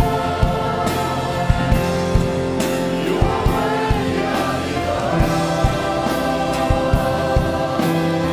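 Large choir singing a gospel worship song over band accompaniment that includes keyboard: sustained chords, with sharp percussive hits recurring throughout.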